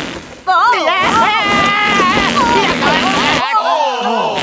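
Cartoon sound effect of a rubber balloon deflating: a squealing whine that wobbles in pitch as the air rushes out of the open neck. It starts about half a second in and cuts off near the end.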